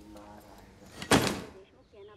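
A door shutting with a loud bang about a second in, the loudest thing here, between faint stretches of a man's voice.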